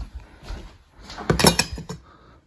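Stainless steel pet food bowls being picked up and handled: a few light knocks, then a louder metallic clatter just past a second in as the bowls are set down.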